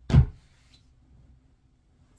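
A single short, heavy thump right at the start, then quiet room tone.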